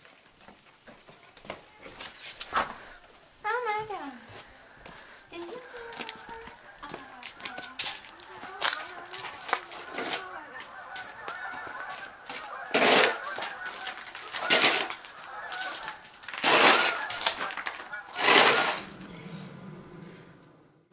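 A plastic snow shovel scraping across snow-covered pavement in four strokes about two seconds apart in the second half, each a loud scrape. Earlier there are faint wavering pitched calls, one of them falling in pitch.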